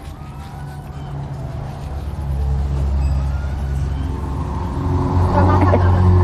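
Low, steady motor rumble that grows louder from about two seconds in.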